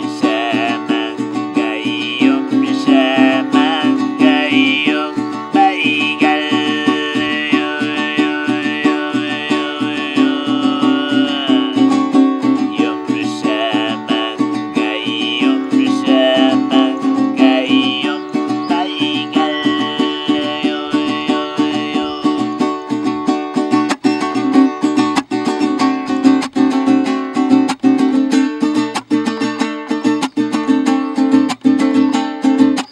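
Siberian-style overtone throat singing, a high whistling melody over a low drone, accompanied by a steadily strummed long-necked lute. The voice stops about 22 seconds in, and the lute carries on alone with even, rhythmic strums.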